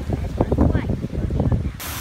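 Indistinct voices over wind rumbling on the microphone; near the end the sound cuts abruptly to the steady rush of a small waterfall under a footbridge.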